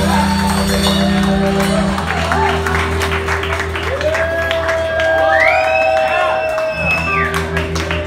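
Live rock band playing an instrumental passage, with bass guitar, electric guitar and drums heard from the audience in a club room. Low bass notes are held under the band, and long sustained high notes slide up into pitch about four seconds in and again a moment later.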